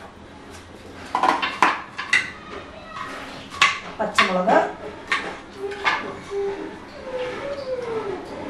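A plastic ice-cube tray is twisted and knocked against a hard surface: sharp clacks and cracks about eight times, irregularly spaced, as the cubes break loose and clatter out.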